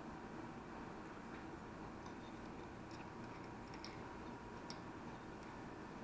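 A few faint, scattered light clicks and ticks from hands turning and handling a Mitutoyo micrometer's metal thimble while it is set to zero.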